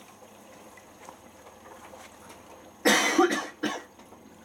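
A person coughs twice, sharply, about three seconds in: a longer cough, then a short one. It is far louder than the faint sloshing of a Miele Professional PW6055 washing machine tumbling wet laundry in its drum during the prewash.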